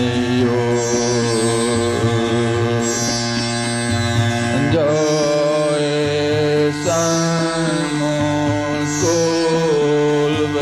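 Slow devotional chant singing over a steady drone: long held notes that glide up or down to a new pitch every second or two.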